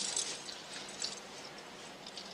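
Quiet drama soundtrack with faint rustling and a few small clicks over a low steady hum, with no dialogue.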